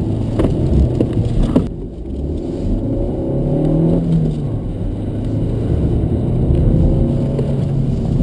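Volkswagen Golf's engine heard from inside the cabin, its note rising and falling as the car accelerates and lifts on a wet track. For the first couple of seconds, sharp ticks sound over a rushing hiss of tyres on water, which then drops away.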